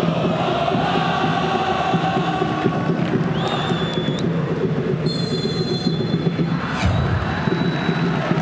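Stadium crowd of football supporters chanting and singing, with high, shrill whistle blasts from the referee: one about three and a half seconds in and a longer one from about five seconds, signalling the kick-off.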